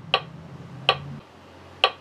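Metronome ticking, three short clicks a little under a second apart, in a pause between piano passages. A faint low piano note dies away under the first two ticks.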